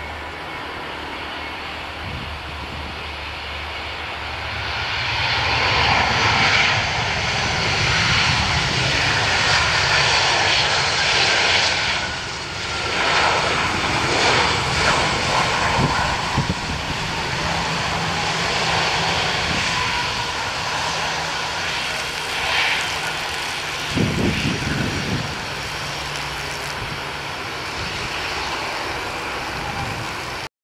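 Airbus A320 jet engines on landing rollout just after touchdown: the engine noise swells a few seconds in as thrust builds, stays loud for about ten seconds with a falling whine, then settles to a lower steady run as the airliner slows. A short low rumble comes later on.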